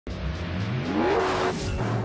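A car accelerating, its engine note rising in pitch for about a second, followed by a rush of noise.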